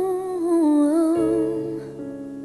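A woman singing a sustained, wavering melodic line with vibrato over held piano chords, without clear words. The chord underneath changes about a second in.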